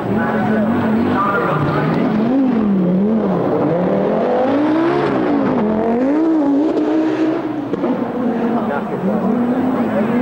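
Audi Quattro rally car's turbocharged five-cylinder engine being driven hard, its pitch rising and falling again and again, about once a second, as the throttle is worked on and off.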